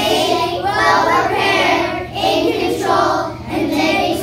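A group of young children singing together in unison, in short phrases with brief breaks between them.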